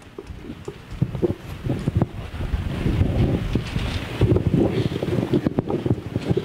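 Handling noise from a handheld microphone being passed along: irregular rubbing, rumble and bumps on the mic.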